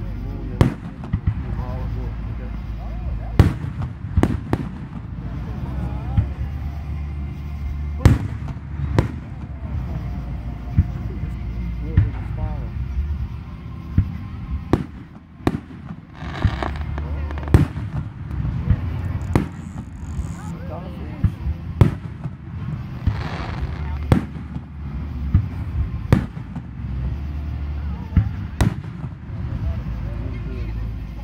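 Large aerial fireworks bursting in a public display: irregular sharp booms, roughly one every second or two, over a continuous low rumble.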